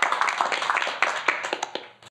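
Audience applauding, many hands clapping, dying away toward the end.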